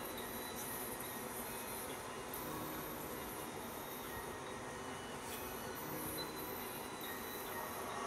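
A steady, even noise with a few faint steady tones, without beat or speech.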